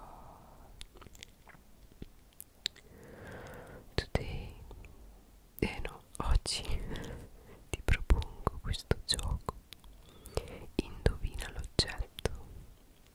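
Close-microphone ASMR whispering with many small sharp clicks and mouth sounds, softer in the first seconds and busier in the second half.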